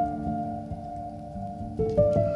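Upright piano with felt laid over its strings, giving a soft, muted tone: a chord held and slowly fading, with faint clicks, then new notes struck near the end.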